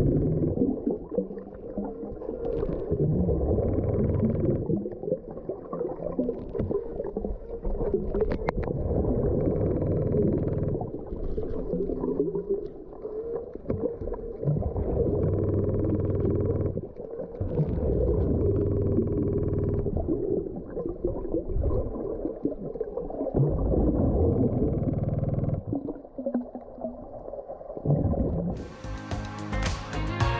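Scuba regulator breathing heard underwater: a muffled draw and a bubbling exhaust, repeating about every three seconds. Music comes in near the end.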